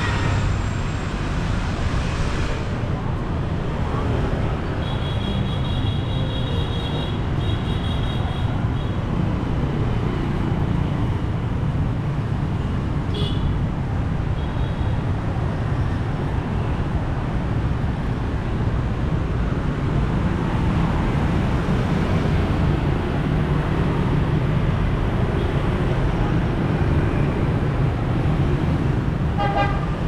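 Steady city street traffic: scooters and cars running past with tyre and engine noise, and short vehicle horn toots, one about 13 seconds in and another near the end.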